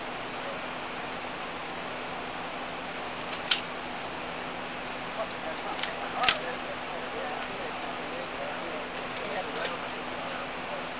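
Steady hiss broken by four short sharp cracks, at about three and a half, six and nine and a half seconds in; the loudest comes just past six seconds.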